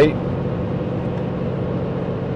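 Steady road and engine noise heard inside a truck's cab while driving at highway speed: an even drone with a low steady hum.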